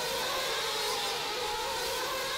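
A pack of nitro RC buggies racing, their small engines held at high revs in a steady, slightly wavering high-pitched whine.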